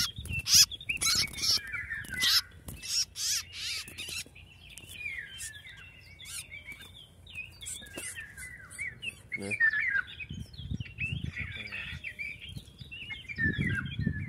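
Small birds chirping: a busy run of short, high chirps and twitters. Several sharp rustling knocks come in the first few seconds.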